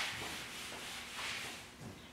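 Felt chalkboard eraser scrubbing across a blackboard in a few back-and-forth strokes, dying away near the end.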